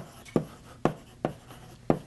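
Chalk writing on a blackboard: about five sharp chalk taps and short strokes, roughly two a second.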